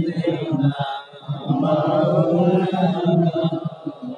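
A man's voice chanting in a melodic, drawn-out recitation, with a short pause about a second in.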